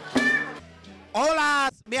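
A Cuban son band's last beat and chord ring out and fade about half a second in. About a second in, a man's voice calls out one drawn-out exclamation that rises and then falls in pitch.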